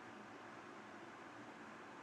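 Faint steady hiss of an 8000 BTU portable air conditioner running with its compressor on.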